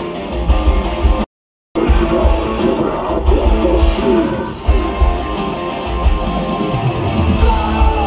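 Live hard rock band with electric guitars and drum kit playing loudly. The sound cuts out completely for about half a second near the start, and a few falling pitch slides come in near the end.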